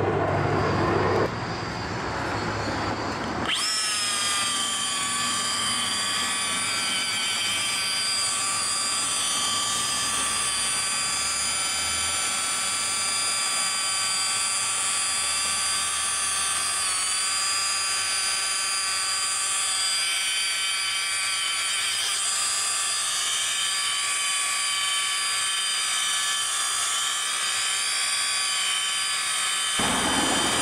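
Handheld electric rotary polisher running steadily with a high, even whine while its pad buffs a truck's painted door. The buffer is kept at a low speed of about 1000 rpm, with no compound. The whine starts about three and a half seconds in and holds with slight wavers.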